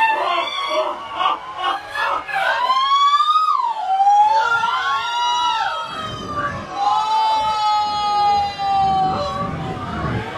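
Crowd of spectators shouting and screaming, with long drawn-out cries that rise and fall in pitch, several voices overlapping near the middle and one long held cry near the end, over a general crowd din.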